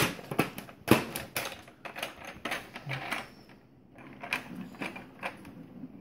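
Irregular plastic clicks and clacks as a baby's hands knock and fiddle with the toys on a baby walker's activity tray. They are loudest at the start and again about a second in, and thin out for a moment past the middle.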